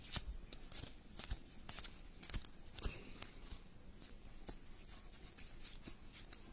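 A stack of baseball cards being flipped through by hand: soft, irregular flicks and slides of card stock, about two a second, thinning out near the end.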